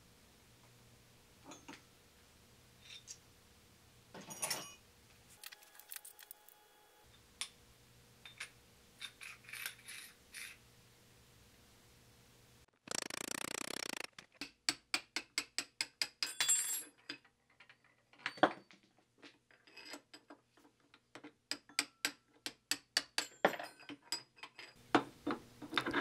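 A hammer tapping an adjustable wrench clamped on a cast aluminium lathe tailstock: a run of sharp metal-on-metal taps, about two a second, through the second half. Before them come faint clicks of metal parts being handled and a brief rushing noise.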